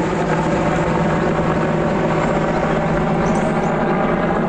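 Military helicopter flying overhead: a steady rotor and engine sound.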